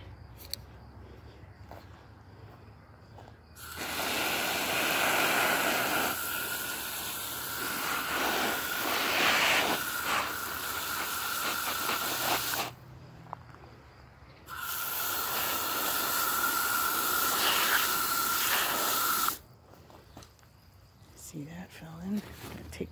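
Garden hose spray nozzle spraying water onto potting soil in two long bursts, the first about nine seconds and the second about five, a steady high tone running through the hiss of the spray.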